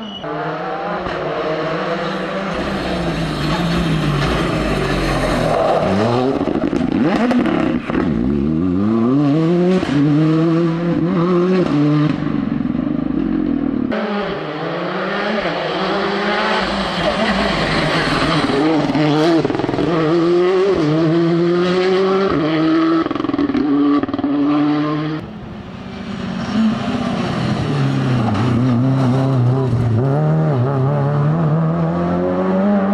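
Rally car engines revving hard, pitch climbing and dropping over and over as the cars go up and down through the gears. The sound changes abruptly about halfway through and dips briefly near the end as one car gives way to the next.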